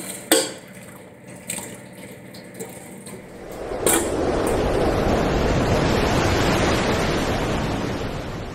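A ladle knocking and scraping against a large metal pot, a few separate clinks. About halfway through, a loud, steady rushing noise swells in and holds, much louder than the clinks.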